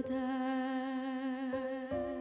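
A woman singing a hymn, holding one long note with vibrato into a microphone, over soft piano accompaniment; new piano notes come in near the end.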